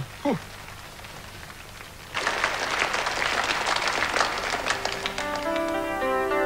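Audience applause starting about two seconds in, then the instrumental introduction of a song begins near the end.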